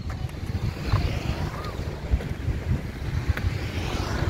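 Wind buffeting the microphone as an uneven low rumble, with a few faint clicks.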